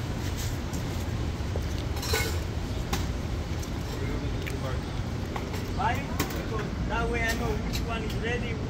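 Street traffic rumbling steadily, with a few faint clicks and, in the second half, faint voices talking.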